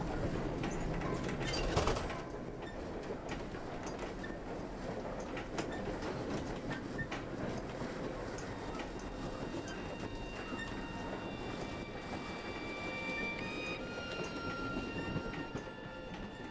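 Railway carriage running along: a steady rumble with the clatter and clicks of the wheels. It is louder for the first two seconds, then settles lower, and faint steady high tones join about halfway through.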